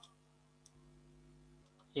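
A single sharp computer keystroke click right at the start, then a faint tick about two-thirds of a second in, over a quiet steady hum.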